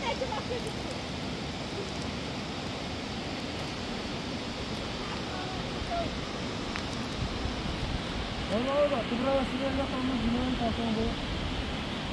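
Steady rush of a fast mountain stream running over rocks, with people's voices talking over it for a few seconds past the middle.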